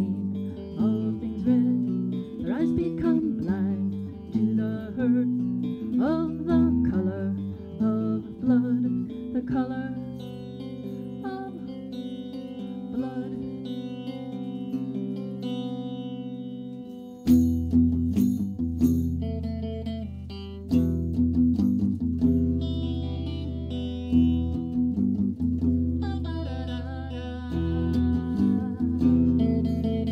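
Live solo song with a woman's voice and an amplified hollow-body electric guitar. She sings over sustained guitar chords at first, the guitar plays more quietly in the middle, and about halfway through loud strummed chords come in suddenly, with her voice returning near the end.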